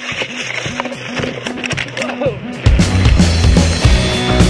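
Rock music soundtrack: a repeating bass figure at first, then the full band with drums comes in loudly about two-thirds of the way through.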